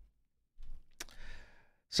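A man breathes out audibly into a close microphone in two short breathy puffs, with a small mouth click about a second in.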